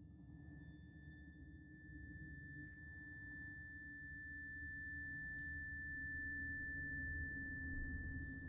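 Television score cue: a single high, pure tone held steadily over a low rumbling drone, slowly growing louder.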